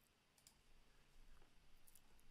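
Near silence with a few faint computer keyboard clicks as a short word is typed.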